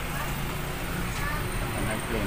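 Steady background noise with a low hum, and faint voices in the background.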